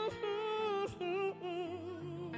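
A woman singing a soul ballad into a microphone over sustained chords from the band; she moves between notes, then holds a long note with wide vibrato in the second half.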